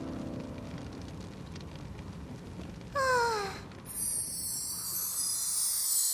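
Cartoon sound effects: a steady rush of burning fire for about three seconds, a short cry with falling pitch about three seconds in, then a high glittering magic shimmer as the ice gives way.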